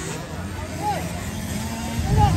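Small motocross bike engines droning steadily in the distance, mixed with scattered spectators' voices.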